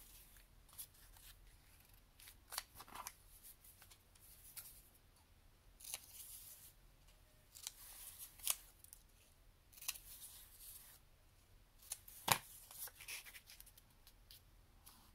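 Hand scissors snipping paper: short, sharp snips at irregular intervals with pauses between, and one louder click near the end.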